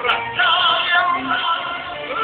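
Live German volkstümlicher Schlager: a male vocal duo singing over band music through a PA system. A long note with vibrato is held through the middle.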